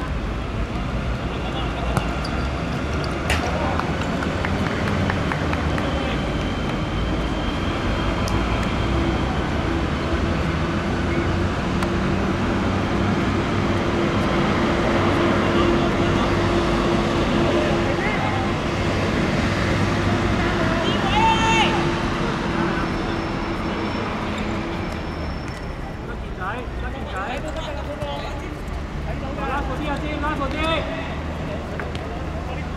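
Steady city road-traffic noise with a low, even drone through the middle, and players' shouts on the pitch, most distinct near the end.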